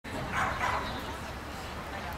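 A dog giving two short barks in quick succession.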